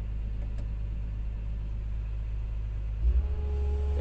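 Komatsu PC200 excavator's diesel engine running steadily, heard from inside the cab. About three seconds in there is a thump, the engine note changes and a steady hydraulic whine sets in as the foot pedal is pressed to turn the grapple's rotator.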